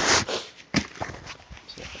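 Phone being handled close to clothing: a short rustle of fabric brushing the microphone, then a sharp knock and a few lighter clicks as the phone is moved about.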